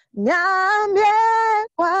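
A woman singing a Twi worship song alone and unaccompanied, heard through video-call audio. A phrase starts with an upward slide into a held note, breaks off briefly near the end, then the singing resumes.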